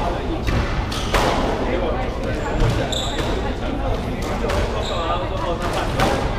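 A squash rally: a squash ball struck by racket and rebounding off the walls gives a few sharp cracks, the loudest about a second in, while shoes squeak briefly on the wooden court floor in the middle and near the end.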